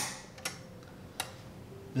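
Plastic terminal cover on a switching power supply's screw-terminal strip clicking as it is lifted open: one sharp click, then two fainter ticks about half a second and a second later.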